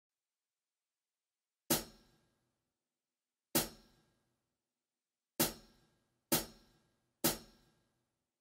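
Percussion count-in at a slow ballad tempo: five short, sharp strikes like a hi-hat or cymbal tap. The first two are about two seconds apart and the last three about a second apart, each dying away quickly, setting the tempo before the band enters.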